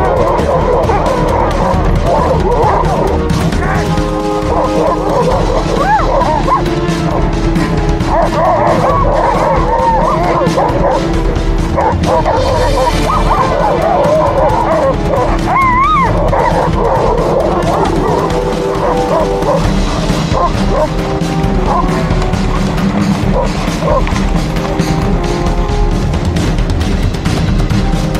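A team of Alaskan Malamute sled dogs in harness whining and yipping together, many wavering, overlapping cries that thin out near the end, over background music.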